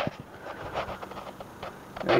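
Quiet workshop room noise with a faint steady low hum, a click at the start and a few soft handling rustles.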